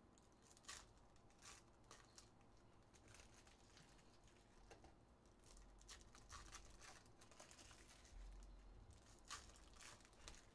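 Faint crinkling and tearing of foil trading-card pack wrappers as packs are torn open by hand, with scattered brief crackles and a sharper one near the end.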